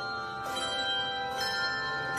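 Handbell choir ringing a piece on handbells: chords are struck, with new strikes about half a second in and again near the middle, and the notes ring on and overlap.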